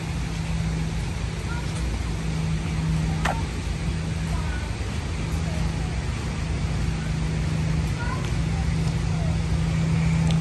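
Steady low hum over a rumbling background, with a few faint short chirps now and then and a couple of light clicks.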